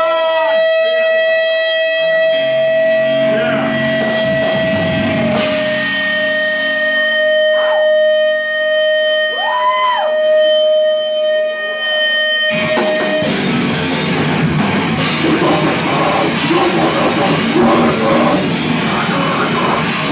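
Electric guitar holding one long ringing note through the amp, with a few quick swoops up and down in pitch. About twelve seconds in, the full heavy rock band comes in together: distorted guitar, bass and drum kit, loud and dense.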